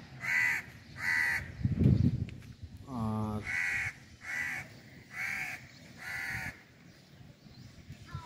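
Crow cawing repeatedly: six short, harsh caws, two close together at the start, then four more in a row a little after the midpoint.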